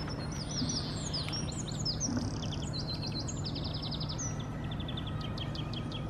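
Several small songbirds singing and chirping together, with rapid trills of repeated high notes and quick sweeping calls, over a steady low background noise.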